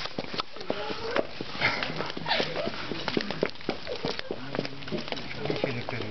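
A hungry cat biting and chewing at a sausage: a run of quick, irregular clicks and smacks of eating.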